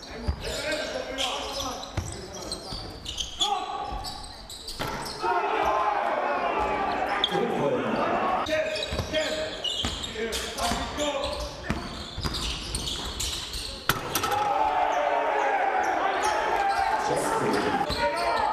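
Live court sound of a basketball game in a sparsely filled hall: the ball bouncing on the hardwood floor and players' voices calling out, with the sound changing abruptly at each cut between clips.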